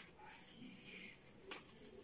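Near silence with faint rustling of a sheet of printer paper being folded by hand, and a small tick about one and a half seconds in.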